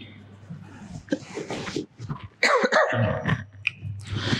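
A man's sneezing fit: two loud bursts, about one second and two and a half seconds in, the second the louder.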